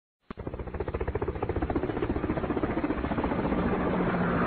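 A machine running with a rapid, even beat of about eight pulses a second, opening with a sharp click, with a low steady hum coming up near the end.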